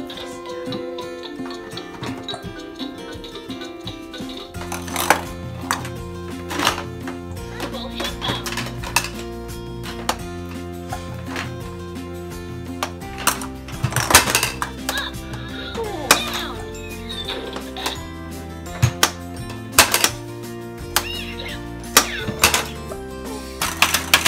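Music with a steady melody, joined by a bass line about four seconds in, over repeated sharp clicks and clatters of plastic balls dropping into and rolling down a toy's spiral plastic ramps.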